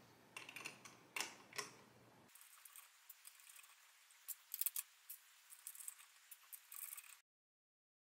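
Faint, scattered light clicks and small metallic rattles of CPU cooler mounting brackets and their fittings being handled and set onto the mounting screws around a motherboard's CPU socket.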